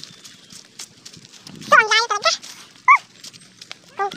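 A dog barking: a longer call about two seconds in, then a short yelp about a second later.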